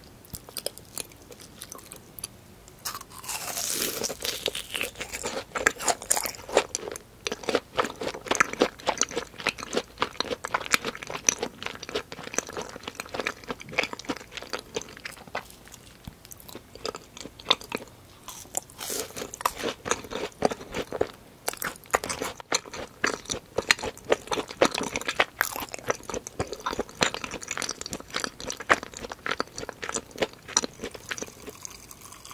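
Close-miked eating of crispy fried food, a fried cream cheese ball among it: crisp bites and steady crunchy chewing throughout. There is a louder crunchy bite about three seconds in and another burst of crunching around nineteen seconds.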